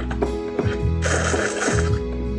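Electronic keyboard playing held chords over low bass notes that change about once a second. A hiss that lasts about a second comes in midway.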